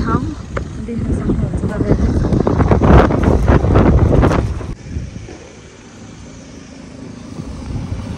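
Wind buffeting the camera's microphone: a loud, gusty low rumble that cuts off suddenly about two-thirds of the way through, leaving a quiet street background.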